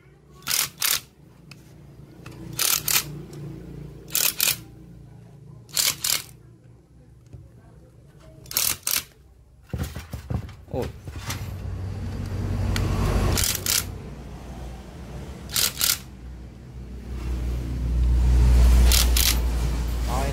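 Corded electric screwdriver driving engine-cover bolts home in short paired bursts, a pair every couple of seconds, as each bolt is run in and snugged. Low handling rumble in the second half.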